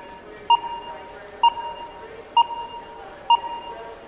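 Sonar-like ping sound effect striking four times, a little under a second apart; each ping is sharp and bright and rings on after it. Under the pings runs a soft steady background drone.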